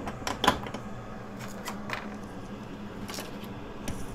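A few scattered light clicks and taps, loudest in the first second, over a faint steady low hum.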